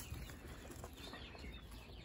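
Faint, scratchy rustling of wood-shavings bedding as quail shuffle and settle in it.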